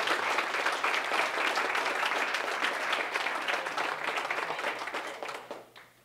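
Audience applauding, a steady clapping that fades out near the end.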